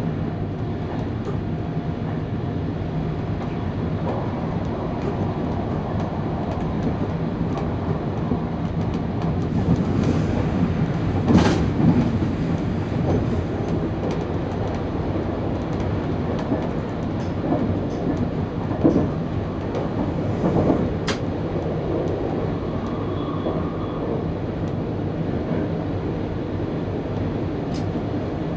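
Electric train running along the track, heard from inside the driver's cab: a steady rumble of wheels on rail with scattered sharp clicks and knocks, loudest about eleven to twelve seconds in.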